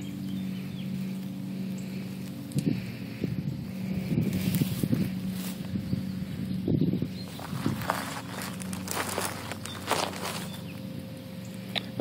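Distant petrol lawn mowers droning steadily, with intermittent rustling close to the microphone.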